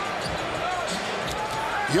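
Basketball dribbled on a hardwood court, a few bounces, over a steady arena crowd hubbub.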